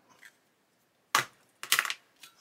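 Small hobby tools being handled and set down on the workbench: one sharp click about a second in, then a quick clatter of several light clicks near the end.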